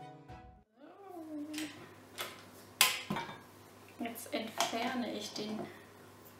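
Background music cuts off, then come a few sharp clicks and clanks of a stand mixer being handled, the loudest about three seconds in, as its tilt head is raised and the wire whisk attachment taken off. A voice speaks quietly near the end.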